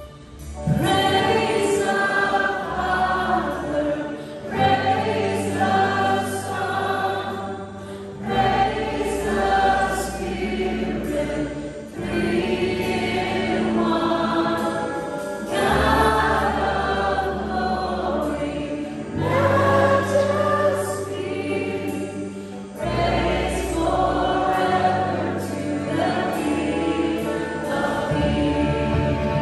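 Live worship band playing a song, with voices singing over acoustic guitars, violin, drums and bass guitar. The full band comes in loudly about a second in, after a quiet passage.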